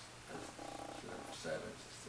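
A man murmuring quietly to himself: a few short, low hums that pulse finely, between about half a second and a second and a half in.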